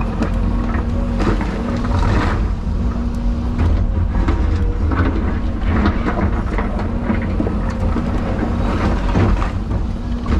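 Excavator's diesel engine and hydraulics running under load, heard from inside the cab, a steady low rumble with a level hum that drops in and out as the controls are worked. Over it come repeated knocks and scrapes of concrete chunks against the steel bucket and rubble.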